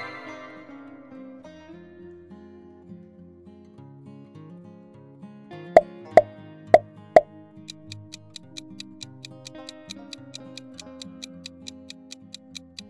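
Quiz-video sound effects over light background music: four pops about half a second apart as the answer options pop onto the screen, then a fast, even ticking of a countdown timer.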